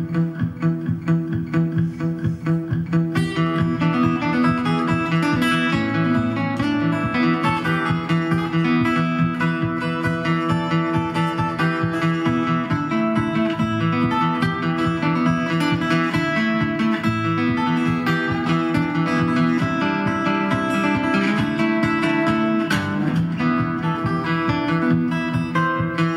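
Steel-string acoustic guitar played fingerstyle: a solo Irish-style instrumental tune, melody notes picked over a steady running bass line.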